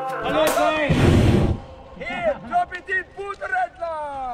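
People talking and calling out, with a loud rushing noise about a second long near the start.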